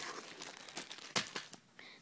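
Rustling and crinkling as small packaged items are handled and set down, with a few light clicks and knocks, one a little louder just past the middle.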